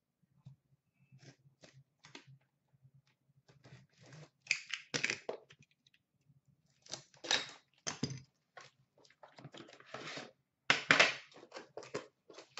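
Cardboard trading-card box being torn open by hand: irregular rustling and ripping strokes of cardboard and wrapper, in a few bursts with the loudest near the end.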